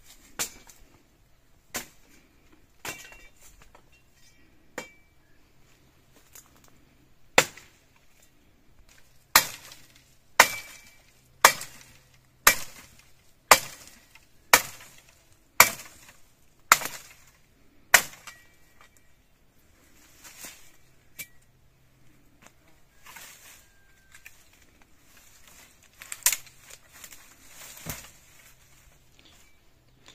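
Machete chopping into a tree branch: a run of sharp blows about one a second through the middle, with a few lighter knocks before and after.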